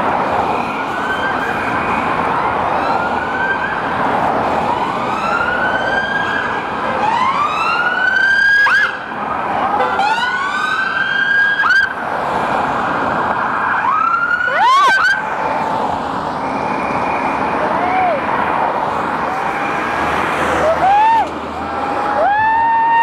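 Sirens of passing police cars and an ambulance: several rising wails overlapping one another, a fast up-and-down yelp about two-thirds of the way through, and steady two-note tones near the end, over crowd noise.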